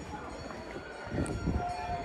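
A tourist road train in the town below sounds a steady held horn tone from about one and a half seconds in, over low rumbling town noise and wind on the microphone.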